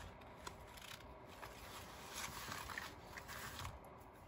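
Faint rustling of paper pages, with small ticks, as a paper clip is slid onto the page edge and the journal is handled and set down.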